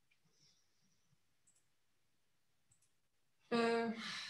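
Near silence in a pause of speech, broken by two faint short clicks about a second and a half apart; a woman's voice starts again near the end.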